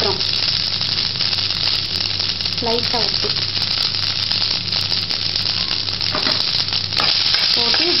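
Steady sizzling of hot oil in a frying pan with frequent small crackles, as steamed rice-flour balls fry with tempered red chillies, curry leaves and seeds, and a spoon stirs them near the end.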